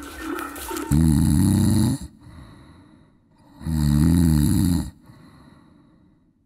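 A man snoring loudly in deep sleep, in long rasping breaths: two snores of about a second each, one starting about a second in and another about three seconds later.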